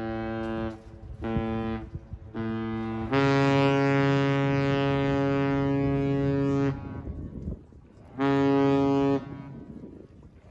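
Horns of Great Lakes freighters Tim S. Dool and Algoma Harvester sounding a salute in separate steady blasts. A blast ends just under a second in and is followed by two short ones. Then comes one long blast of about three and a half seconds, and another of about a second near the end.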